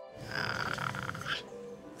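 A woman's audible, rasping breath lasting about a second, taken in a pause while she speaks emotionally, over soft background music.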